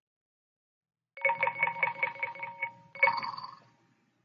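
Yousician app's results-screen chimes: a quick run of bell-like beeps, about seven a second for a second and a half, then a single brighter chime that fades out.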